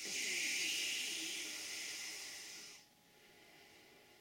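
A woman's long, slow, deliberate exhalation blown out through the mouth as a calming out-breath. It is a steady breathy hiss that softens gradually and stops a little under three seconds in.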